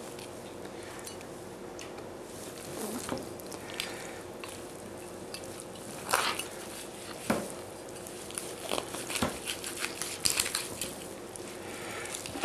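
Kitchen knife cutting a raw pheasant apart on a plastic cutting board: scattered clicks, crackles and knocks as the blade works through the joints and meets the board, with a few sharper knocks about six and seven seconds in. A faint steady hum lies underneath.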